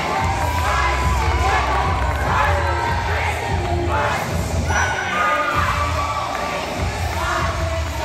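Crowd cheering and shouting, with high yells that rise and fall, over music with a steady bass.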